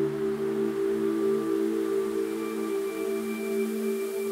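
Ambient meditation background music of sustained, ringing drone tones with gentle swells; a higher, thinner tone joins about halfway through.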